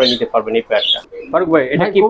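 Domestic pigeon cooing, heard under a man's speech.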